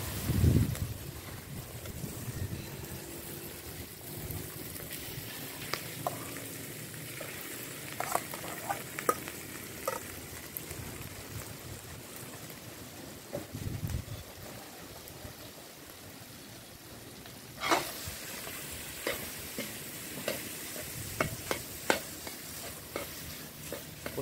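Garlic fried rice sizzling steadily in a large metal wok over a wood fire, with a heavy thump about half a second in and scattered scrapes and knocks of a long wooden spatula stirring the rice against the pan.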